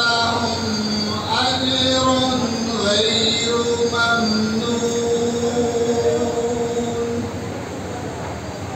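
A man's voice reciting the Quran in a slow melodic style through a microphone and PA, drawing out long, wavering held notes that glide from one pitch to the next. The held notes end about seven seconds in.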